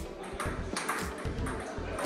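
Table tennis ball clicking off the bats and the table during a rally: several sharp ticks a fraction of a second apart.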